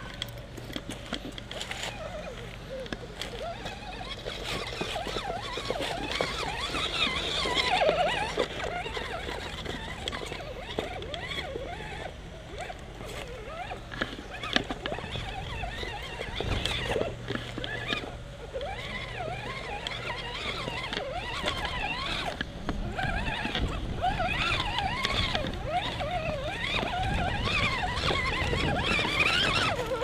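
Electric RC rock crawler's motor and drivetrain whining, the pitch rising and falling as the throttle is worked while the truck crawls over loose boards and rocks, with scattered knocks and clatter of the tyres and chassis on the obstacles.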